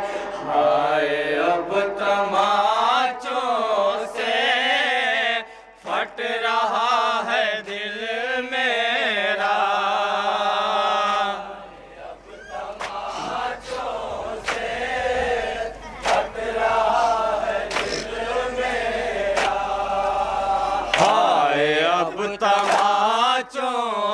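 Male voice singing an unaccompanied Urdu noha (mourning lament) through a microphone and PA. In the second half the singing thins and a steady beat of about one stroke a second takes over, the rhythmic chest-beating (matam) of the mourners, before the full singing comes back near the end.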